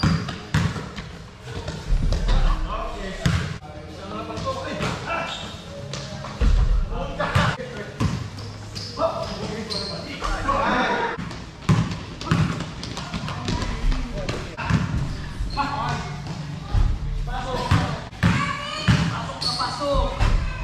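A basketball bouncing repeatedly on a hard indoor court floor, with players' voices calling out in a large gym.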